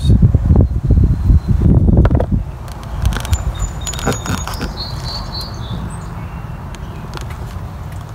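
Wind buffeting and handling noise on a handheld phone microphone, loud and rumbling for the first two seconds or so, then dropping to a quieter outdoor background with a few faint high chirps.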